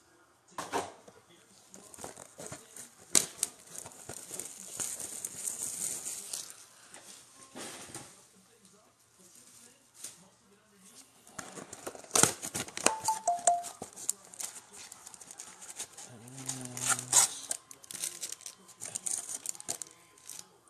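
Foil trading-card packs crinkling and cardboard boxes rustling and tapping as they are handled and set down on a table. The sound comes in irregular bursts of crinkling and clicks, with a quieter gap in the middle.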